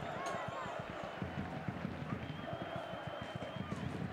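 Football stadium pitch-side sound: a small crowd and distant shouting voices over the quick thuds of players running on the grass, with a faint high whistle held for about a second and a half from about two seconds in.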